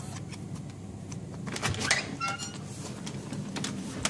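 Electronic keycard lock on a hotel room door: clicks and rattles as the card is put to the lock and the lever handle is worked, with a short electronic beep about halfway through signalling that the lock has accepted the card.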